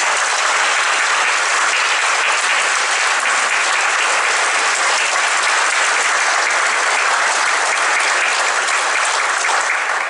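Large seated audience applauding, steady and dense throughout.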